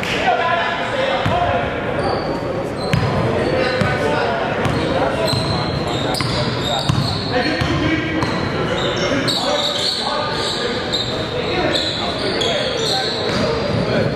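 Live basketball play on a hardwood court in a large, echoing gym: the ball bouncing as it is dribbled, sneakers squeaking in short high chirps, thickest in the second half, and players' indistinct shouts.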